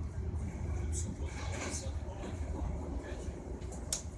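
Passenger train running, heard from inside the carriage as a steady low rumble, with brief hissy bursts over it.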